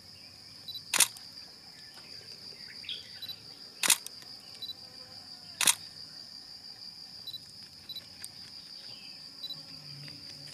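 Three loud camera shutter clicks, about one, four and six seconds in, over a steady high-pitched insect drone.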